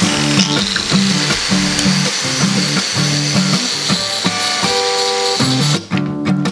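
Angle grinder with a wire cup brush running steadily with a high whine, which cuts off near the end, over background music.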